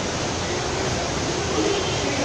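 Steady rushing background noise, with faint voices coming in near the end.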